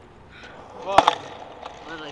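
A skateboard clacking sharply on pavement about a second in, with a quicker second smack right after, over a short shout.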